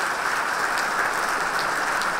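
Large audience applauding steadily at the end of a talk.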